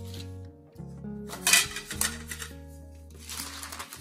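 Background music over a metal springform cake pan clinking and parchment paper being handled on a stone countertop. The handling comes in two short noisy bursts, about one and a half seconds in and again near the end, the first the loudest.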